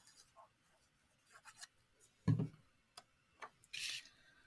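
Quiet handling of paper and card: scattered light clicks and rustles as a glued piece of patterned paper is laid on a foil card base and pressed down, with one soft thump a little past halfway and a brief papery rustle near the end.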